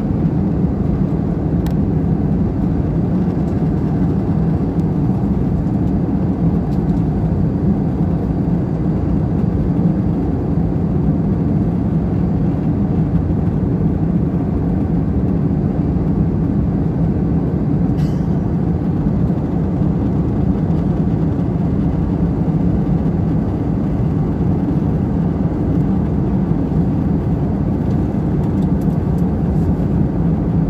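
Jet airliner cabin noise in cruise flight: a steady, low rushing roar of engines and airflow that does not change, with a faint click about two seconds in and another just past halfway.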